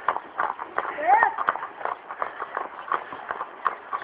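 A horse's hooves clip-clopping on asphalt at a walk, a steady run of sharp irregular strikes. About a second in, a brief rising vocal call.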